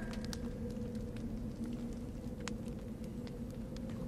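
Quiet film-scene room tone: a low steady hum with a few faint scattered clicks, between two lines of dialogue.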